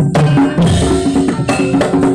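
Javanese gamelan music: a brisk run of struck pitched notes changing every quarter second or so, over steady drumming.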